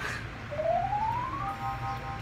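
Edited-in sound effect: a whistle-like tone slides steadily upward for about a second, then settles into a short held chord of a few steady tones.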